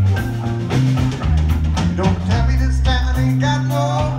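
Live rock band playing: electric bass notes, drum kit and electric guitar, recorded from within the audience.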